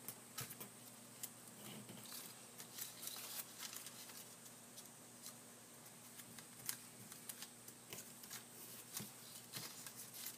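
Faint rustling and scattered light clicks of a sheet of origami paper being folded and creased by hand, its flaps pressed in toward the centre.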